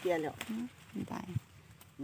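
A woman's voice speaking briefly in Thai, then a quieter stretch with a few faint short sounds and a small click.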